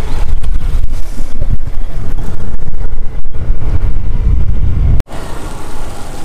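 Motor scooter riding across a wooden plank bridge: a loud, uneven low rumble that cuts off abruptly about five seconds in.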